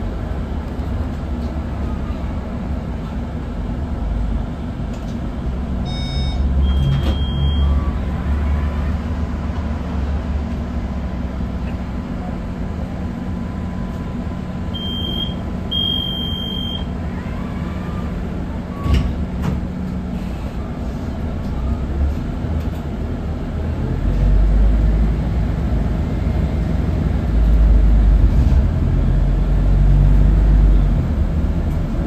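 Scania N280UB CNG city bus heard from inside the passenger cabin while driving, with a steady low engine drone and road noise. A short high-pitched tone sounds twice, about 7 seconds in and again about 16 seconds in. The low engine rumble grows louder over the last few seconds.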